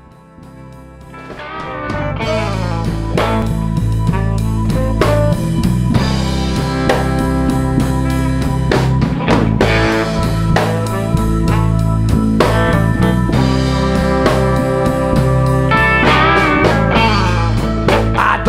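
A live blues band playing an instrumental intro with electric guitar, bass and drum kit, fading in over the first two seconds and then steady.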